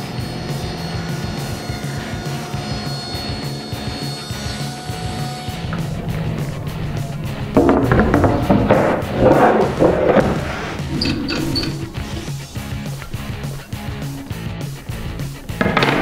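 Background music throughout. About halfway, a table saw cuts through a board on a crosscut sled, a louder rough noise over the music for two to three seconds.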